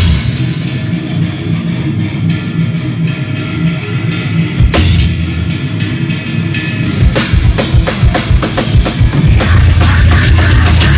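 Deathcore band playing live and loud: heavy distorted guitars and bass under a pounding drum kit, the drum hits coming faster and choppier about seven seconds in.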